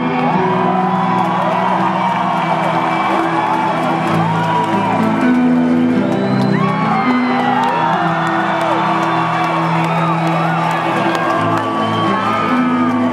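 Live band holding long synth and guitar chords that change every few seconds, with audience members whooping and shouting over the music.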